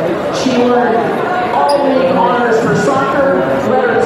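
An announcer's voice over a public-address system in a large gymnasium, echoing off the hard walls and floor.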